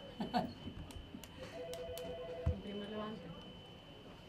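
A short laugh, a few sharp clicks, then a steady electronic tone of two pitches held for about a second, followed by a thump and a brief low voice.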